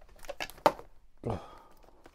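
Vinyl record sleeves being flicked through and pulled on a shelf: a quick run of sharp clicks and knocks, the loudest a little after half a second in, then a brief sound that falls in pitch just past a second.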